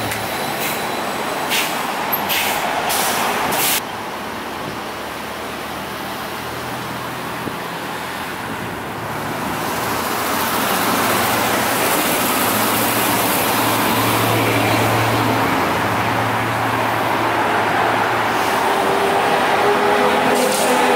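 Street traffic with an electric trolleybus coming up the road and passing. Tyre and engine noise builds from about ten seconds in. A few short, sharp hisses come in the first few seconds.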